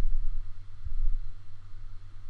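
A pause with no speech: only a steady low hum with a faint hiss, and a few soft low knocks.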